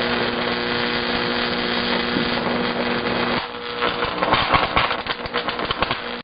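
Microwave oven running with a steady electrical hum. About three and a half seconds in the hum stops, and irregular crackling and popping follows from the Furby toy burning inside.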